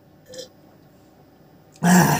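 A man's short, loud burp near the end, after a drink from a can.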